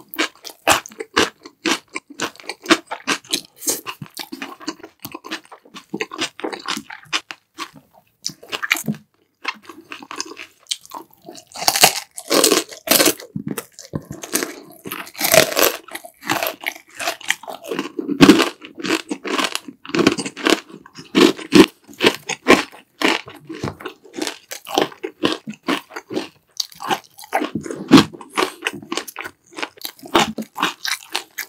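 Close-miked eating sounds: a person chewing black-bean-sauce noodles and crunching crispy fried sweet and sour pork (tangsuyuk), a dense run of crackly bites and chews. The loudest, sharpest crunches fall about halfway through.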